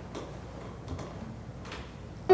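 Quiet room tone with a steady low hum and three faint clicks about three quarters of a second apart.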